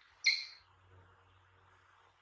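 A baby macaque gives one short, high-pitched squeak about a quarter second in.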